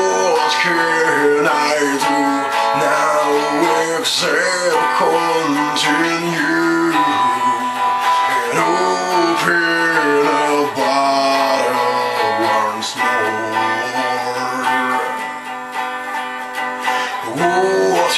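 Guitar-led instrumental break in a rock ballad cover: plucked guitar notes over sustained chords, with no lyrics sung.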